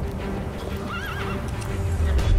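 A horse whinnies once, a short wavering call about a second in, over held trailer music and a low rumble that grows louder near the end.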